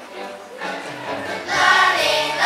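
A children's choir starts singing an English song together over a recorded backing track. The accompaniment plays alone at first, and the voices come in loud about a second and a half in.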